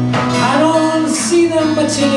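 Acoustic guitar played live with a man singing over it, his voice sliding up and down in pitch through the middle.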